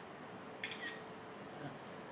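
Smartphone camera shutter sound: a short two-part click a little over half a second in, over quiet room tone with a faint steady hum.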